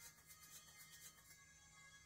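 Very faint audio from a Fostex CR500 CD recorder rewinding through a recorded disc over a low hum. The machine actually scans back through the recorded material rather than skipping through it.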